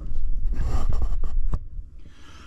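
Handling noise from the camera being picked up and moved: a loud low rumble of rubbing and knocks on the microphone with a few sharp clicks, stopping about one and a half seconds in.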